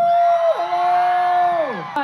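Crowd of fans screaming and cheering, with long held calls that fall away near the end.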